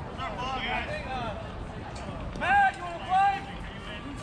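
Raised, high-pitched voices calling out, with two loud shouts about two and a half and three seconds in, over steady background noise.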